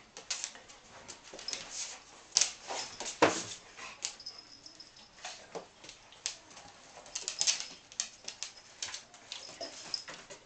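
An otterhound and a cat playing on a hard floor: an irregular scatter of clicks, taps and scuffles from claws and paws, loudest about two to three seconds in.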